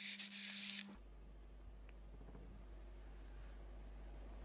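E-cigarette dripper atomizer firing at 40 watts as air is drawn through it: a hiss lasting about a second, with a faint steady low hum under it. Only faint room noise follows.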